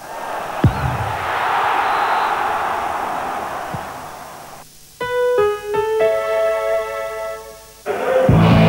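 A swelling whoosh of noise with a low thud about half a second in, fading out after about four seconds. Then a short electric-piano jingle: four notes struck one after another, held together as a chord.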